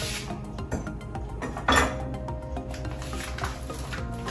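Background music playing over kitchen handling sounds as a plate and a package of raw ground beef are worked on the counter. The loudest is a short, sudden noise a little under two seconds in.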